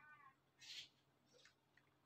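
Near silence. A faint, short call rises and falls in pitch right at the start, and a faint soft hiss follows a little under a second in.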